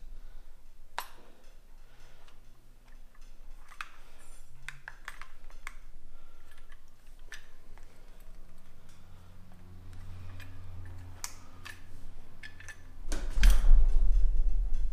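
Scattered small clicks and light taps of a screwdriver working against the plastic fuel gauge as the gasket is taken out. Near the end comes a louder close rustle and bump.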